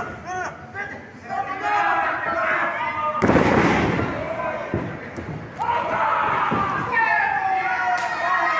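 A wrestler slammed onto the wrestling ring's canvas. A loud crash about three seconds in rings on for about a second, followed by a few smaller thuds on the mat.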